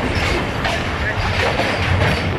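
Train running across a steel truss railway bridge, heard from an open carriage doorway: a steady low rumble of wheels on rails with irregular clattering knocks.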